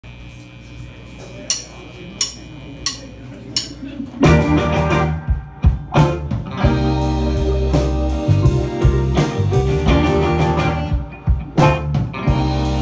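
A drummer's count-in of four evenly spaced clicks, then about four seconds in a rock band comes in loud on the downbeat with electric guitars and drum kit, playing live.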